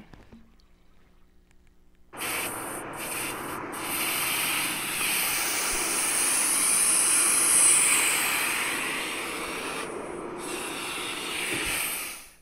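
Garage air hose putting air into a tire: a long hiss of compressed air that starts suddenly about two seconds in, with a few short breaks near the start and again about ten seconds in.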